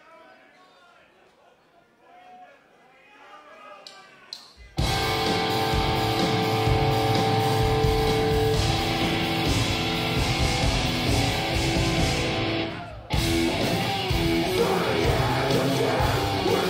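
Faint crowd chatter, then a live metalcore band kicks in suddenly and loudly, with distorted guitars, bass and drums. It stops short for a moment about 13 seconds in, then crashes back in.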